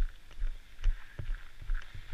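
Footsteps in ski boots on an icy gravel lot: irregular low thumps with light crunches, about three a second.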